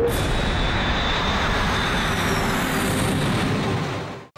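Small aircraft flying low, its engine running steadily, with a faint high whistle falling in pitch partway through.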